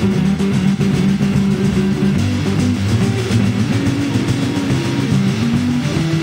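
Live blues band playing an instrumental passage: electric guitar over bass, drums and piano, steady and loud with no singing.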